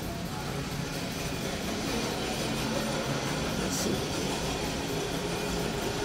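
Steady big-box store ambience: a low hum with faint background music.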